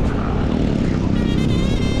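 Wind buffeting the camera microphone while riding a road bicycle at speed, a steady loud low rumble, with a faint wavering high tone in the second half.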